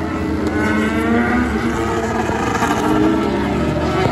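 Several race car engines running at a distance, their pitch slowly rising as they accelerate.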